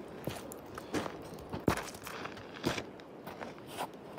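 Footsteps crunching on gravelly, stony ground, about one step a second.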